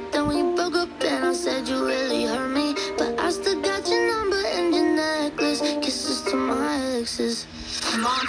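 Music from an FM broadcast playing through a portable AM/FM/SW radio tuned to 93.1 MHz, heard through its small speaker with little bass.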